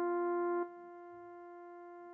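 Casio mini electronic keyboard sounding one held note, a steady electronic tone with a clear pitch. About two-thirds of a second in it drops to a softer level and then holds steady while the key stays down.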